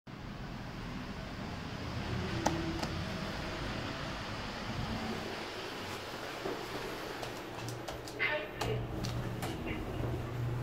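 Steady ventilation hum in a building lobby, with a single sharp click about two and a half seconds in as the elevator call button is pressed. Footsteps on a tile floor and a run of clicks follow in the last few seconds.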